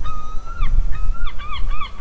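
Goose honks in a quick string: two longer calls, then short honks at about four a second, over a low background rumble.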